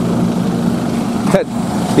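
Steady low hum of an idling vehicle engine, with a brief sharp sound about a second and a half in.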